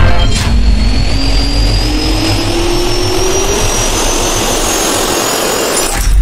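Jet-engine sound effect spooling up: a steady rush of air with a whine whose pitch climbs steadily.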